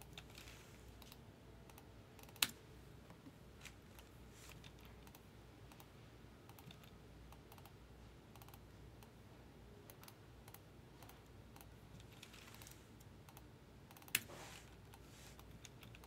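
Faint, sparse clicks of a computer keyboard and mouse, with two sharper clicks about two and a half seconds in and near the end.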